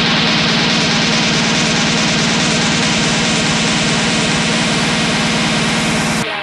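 Hard techno playing in a DJ mix: a dense, distorted, steady drone in the low end under rapid, evenly spaced drum hits, loud throughout.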